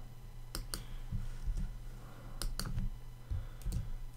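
Computer keyboard keystrokes: a few separate clicks, a pair about half a second in, a quick cluster a little after two seconds in and another pair near the end.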